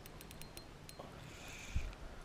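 Fishing reel being wound while a hooked fish is played: faint, irregular ticking, mostly in the first second, with a soft low thump near the end.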